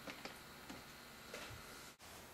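A few faint, short clicks from the push-button controls of a small video monitor as its power button is pressed, over a low steady room hiss.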